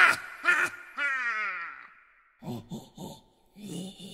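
Sampled female goblin voice doing an evil laugh: a few short breathy bursts, a long cry falling in pitch, then a run of short pulsed 'ha' sounds.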